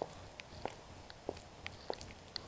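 Quiet background with a few faint, irregularly spaced clicks and ticks.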